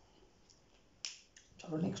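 A single sharp click about a second in, then a faint tick, followed by a man's voice.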